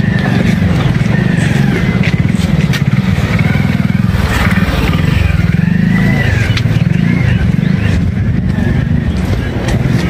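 A motor vehicle engine running close by, a steady low rumble with faint voices above it.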